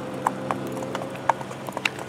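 Horses' hooves clopping on pavement at a walk, in uneven, separate knocks.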